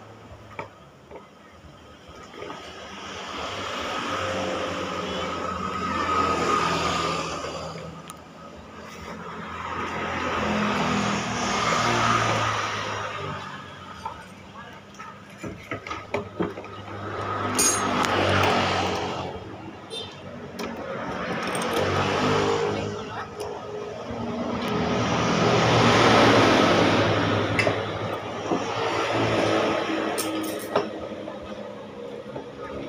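Motor vehicles passing one after another, each swelling up and fading over several seconds. A few light metal clicks of a wrench on the motorcycle's steering head come about two-thirds of the way through.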